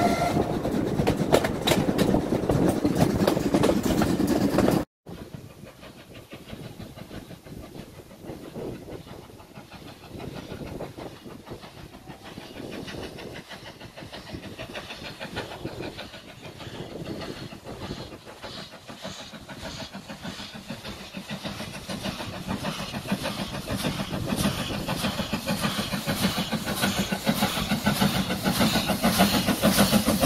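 A railway carriage running along the line, with a rolling rumble and rail clicks and a brief whistle at the very start. After a sudden cut, British Railways Standard Class 4MT steam locomotive No. 76084 approaches from a distance, its rhythmic exhaust beats growing steadily louder as it nears.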